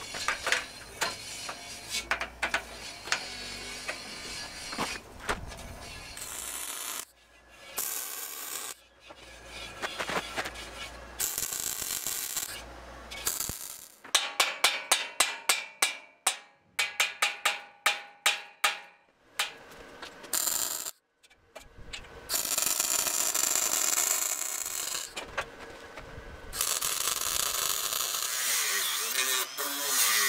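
Metalwork on a steel square-tube frame in several short takes: clicks and clanks of steel pieces being handled, then a run of hammer blows on the steel tubing, a couple or so a second, about halfway through. Near the end a cordless angle grinder runs steadily, cutting steel tube.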